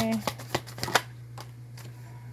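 A deck of tarot cards being shuffled by hand, hand over hand, with a few sharp card snaps in the first second that then grow quieter.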